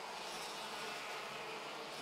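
Several OK-class 125cc two-stroke kart engines buzzing at high revs as a pack of karts races past, a steady, even buzz.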